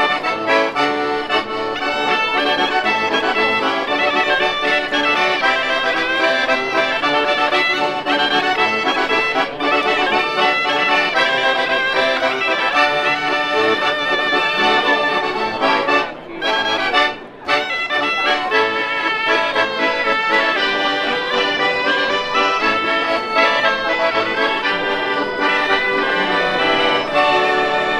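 Accordion and piffero, the double-reed folk shawm of the Quattro Province, playing a traditional dance tune together, with two brief breaks about sixteen and seventeen seconds in.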